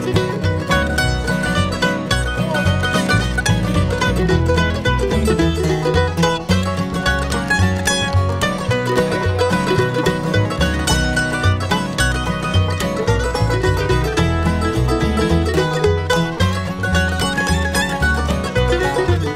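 Bluegrass band playing an instrumental break, the mandolin picking the lead over banjo, acoustic guitar and upright bass keeping a steady beat.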